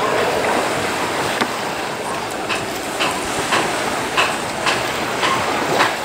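A knife cutting and trimming raw conch meat on a wooden table: from about a second and a half in, sharp knocks and clicks come about twice a second, over a steady wash of wind and surf noise.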